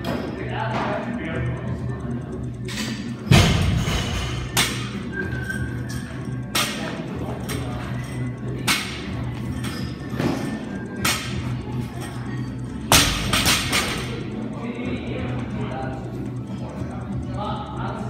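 A 30 kg barbell being cleaned and dropped back to the floor again and again, several thuds a second or two apart, the loudest about three seconds in and again about thirteen seconds in. Background music plays throughout.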